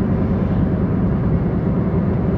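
Steady road and engine noise heard inside the cabin of a car driving along a paved road, a low, even rumble.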